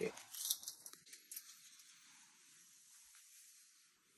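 A few sharp clicks of a wooden popper lure being handled and set into a sink of water, then a faint hiss of the water settling that fades out over the next couple of seconds.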